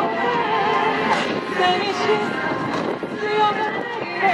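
A pop song performed live: a woman singing a wavering melody over backing music.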